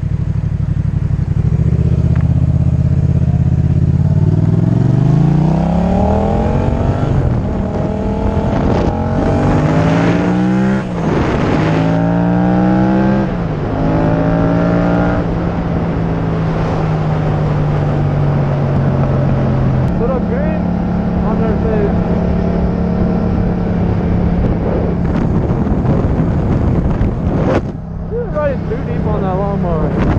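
Yamaha FZ-07's parallel-twin engine running at low revs, then revving up through several gear changes as the bike pulls away and accelerates, each upshift cutting the rising pitch back down. It then settles into a steady drone at cruising speed.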